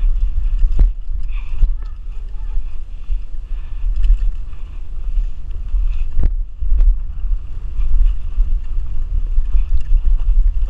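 Wind buffeting the action camera's microphone as a mountain bike is ridden fast over dirt jumps, with tyre noise on the dirt and a few sharp knocks and rattles from the bike as it lands and hits bumps.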